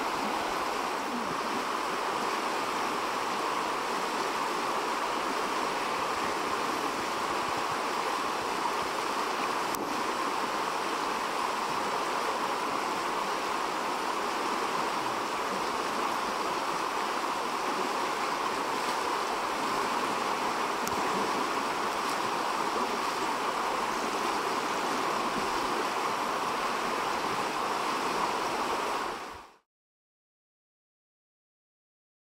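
Rushing water of a shallow river riffle, a steady, unbroken rush that cuts off suddenly near the end.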